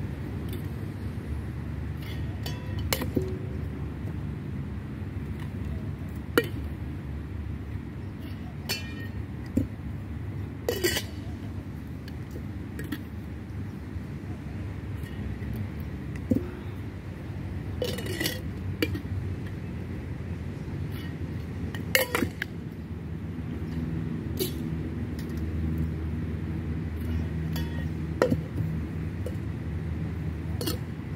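Flair bartending tins and bottle clinking and knocking as they are thrown, caught and set down, about a dozen sharp knocks scattered a few seconds apart. A steady low background rumble runs beneath them.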